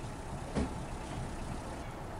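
Motor vehicle engine running under a steady low outdoor rumble, with a single thump about half a second in.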